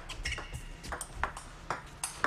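Table tennis ball rally: a quick series of sharp plastic clicks as the ball is struck by the rubber paddles and bounces on the table, a few per second, with a brief high squeak near the start.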